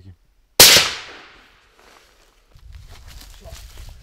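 A single rifle shot about half a second in, very loud and sharp, its sound trailing away over the next second. From about two and a half seconds in, a low rumble with scattered faint clicks.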